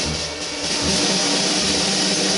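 Free jazz on drum kit and double bass: a steady wash of cymbals over plucked bass notes, thinning out briefly about half a second in.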